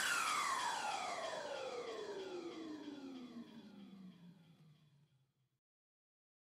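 Electronic music ending on a single falling synth sweep: one long downward glide in pitch that slowly fades and dies out about four and a half seconds in.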